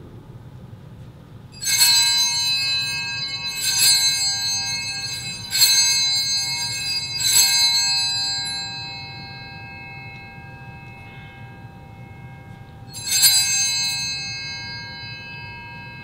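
Altar bell rung at the elevation of the host during the consecration. It rings four times about two seconds apart and once more some five seconds later, each high, many-toned ring dying away slowly.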